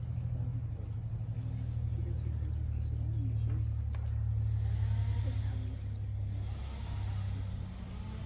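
A steady low hum, with faint voices murmuring in the middle of it.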